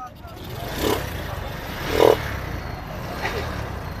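Motorcycle engine running nearby amid the steady noise of a busy outdoor market, with voices in the background.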